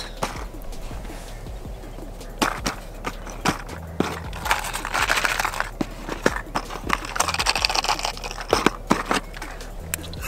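Fishing lures in plastic packaging and cardboard boxes being handled and shaken: scattered clicks and knocks, then a few seconds of quick rattling from the lures' internal rattles.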